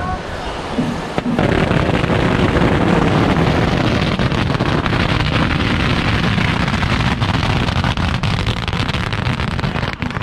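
A long string of firecrackers going off in a dense, continuous crackle of rapid small bangs, starting about a second in, with crowd voices underneath.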